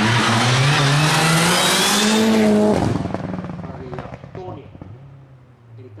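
Rally car's engine running hard through a corner, its pitch rising as it accelerates. The sound drops off sharply about three seconds in as the car passes, then fades away.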